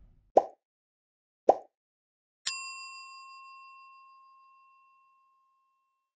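Sound effects of a subscribe-button animation: two short pops about a second apart, then, near the middle, a notification bell ding that rings on and fades away over a couple of seconds.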